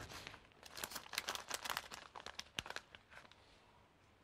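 Light crinkling and crackling of something small being handled in the hands, a quick run of crackles for about two seconds that then dies away.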